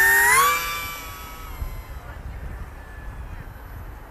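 OMP Hobby T720 glider's electric motor and propeller whining up in pitch under throttle as the plane is hand-launched. The whine fades within about a second and a half as the plane flies away, leaving a low wind rumble.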